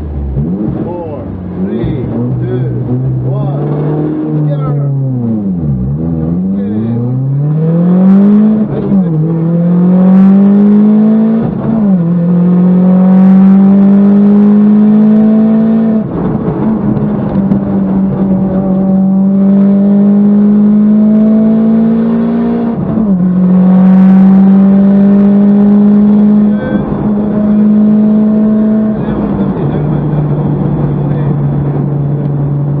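Rally car engine heard from inside the caged cabin, accelerating hard through the gears. The pitch climbs and then drops back at each upshift. Around five seconds in the pitch falls sharply, then climbs again.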